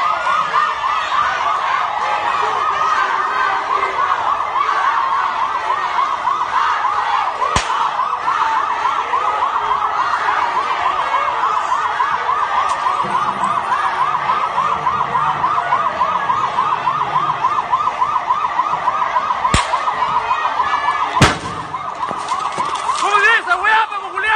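Police siren rapidly warbling at a steady pitch. A faint crack sounds twice, then a loud sharp bang about three-quarters of the way through, after which the siren drops away.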